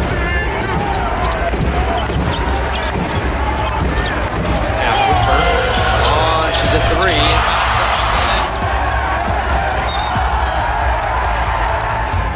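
A basketball bouncing on a hardwood court, with arena voices and shouts, over a music track with a steady low bass.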